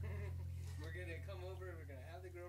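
A baby's faint, wavering cries or fussing vocal sounds, over a steady low hum.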